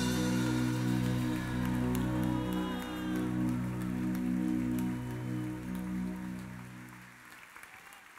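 The final held chord of a live song rings on after the singer's last note and fades out over about seven seconds, leaving the hall much quieter near the end. A few scattered claps from the audience begin under the fading chord.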